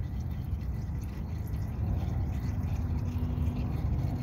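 Thin stream of used engine oil trickling and dripping from a Yamaha XVZ1300's drain-plug hole into a plastic drain pan as the sump drains, over a steady low rumble.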